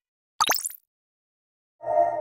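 Two short editing sound effects on an animated title card: a quick plop whose pitch falls steeply, about half a second in, then a second short effect made of several steady tones starting near the end.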